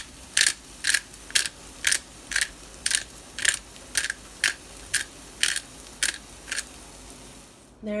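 Black pepper grinder being twisted over a pan of scrambled eggs, each turn giving a short crunch of peppercorns being ground. The crunches come about two a second and stop about six and a half seconds in.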